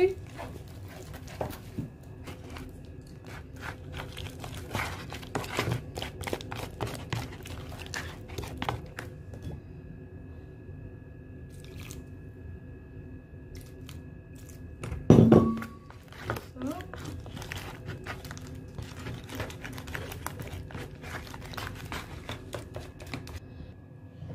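A metal spoon stirring a thick paste of herbal powder and warm water in a plastic tub, scraping and clicking against the sides in quick irregular strokes. There is one louder short sound about fifteen seconds in.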